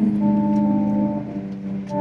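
Electric guitar chords ringing out between sung lines, the notes held steady with a change of chord about a second in.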